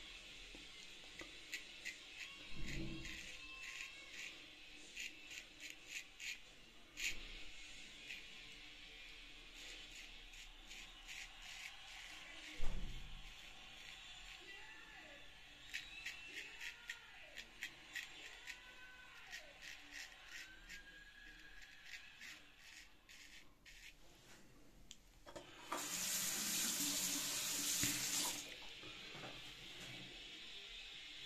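Straight razor cutting through lathered stubble in short strokes, a quick run of crisp crackling clicks, with a couple of low thumps of handling. Near the end a tap runs for about two seconds.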